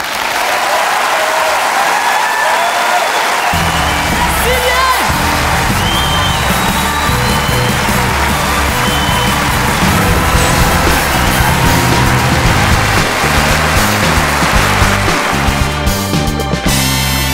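A large theatre audience applauding loudly at the end of a comedy set. Music with a heavy bass beat starts up over the applause about three and a half seconds in.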